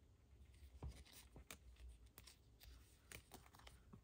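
Faint rustling and light clicks of paper stamp-shaped stickers being handled and flipped through by hand, a scattering of soft ticks over quiet room tone.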